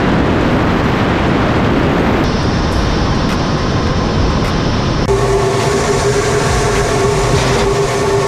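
Steady, loud rushing roar of airflow and jet engine noise picked up by onboard cameras on a Su-25 attack jet in flight. The sound changes character abruptly at each cut between cameras. From about five seconds in, a steady whine sits over the roar.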